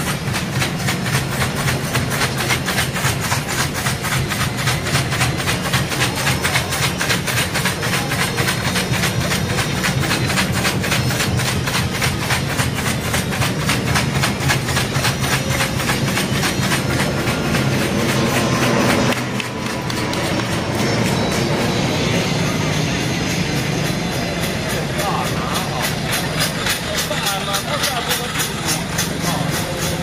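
A long string of firecrackers going off in rapid, evenly spaced cracks, breaking off briefly about two-thirds of the way through and then carrying on a little weaker.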